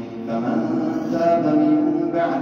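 A man chanting the Quran in melodic tajweed style, drawing out long held notes. There is a brief breath-like dip right at the start, then the voice swells into a sustained line.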